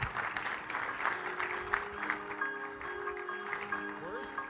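An audience applauding, with music coming in about halfway through and playing held notes over the clapping.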